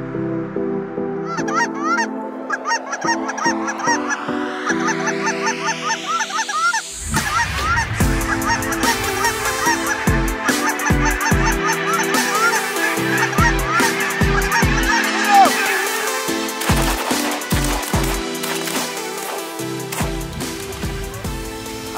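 A large flock of geese honking, many calls overlapping, Canada geese and snow geese among them. Edited background music runs underneath: a rising sweep builds for about the first seven seconds, then a beat with deep kicks comes in.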